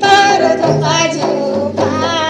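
Mundari folk dance music: high voices singing in chorus over hand-beaten two-headed barrel drums.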